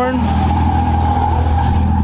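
A car engine running steadily at a constant pitch, with no revving.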